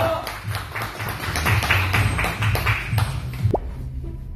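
A small group of people clapping by hand, irregular claps for about three and a half seconds, then a brief rising tone near the end.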